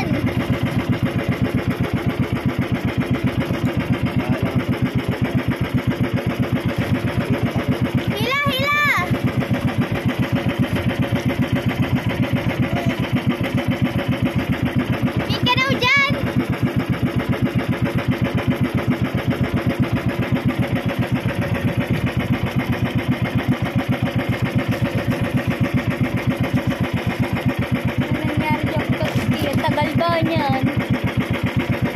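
Engine of a motorized outrigger fishing boat running steadily at cruising speed. It is interrupted twice, about eight seconds in and again around sixteen seconds, by brief high-pitched voice cries.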